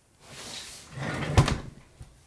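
Handling noise from the recording device being picked up and moved: a short rustling scrape, then a louder rubbing noise with a sharp knock about one and a half seconds in.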